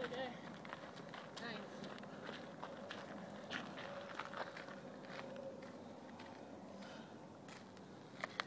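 Faint footsteps and shuffling on gravel and grass, with scattered small clicks and crackles.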